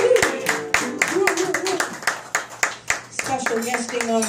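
Applause from a small audience: scattered, irregular hand claps, several a second.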